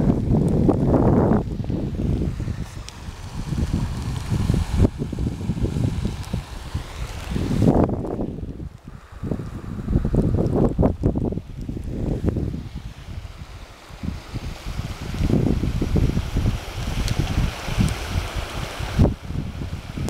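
Gusty wind buffeting the microphone: a low rush that swells and fades several times.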